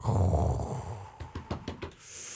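A man's low, drawn-out thinking sound, a nasal 'hmmm', that fades over about a second, followed by a few small mouth clicks.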